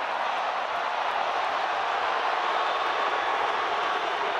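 Stadium crowd noise: a steady roar of many voices that does not rise or fall.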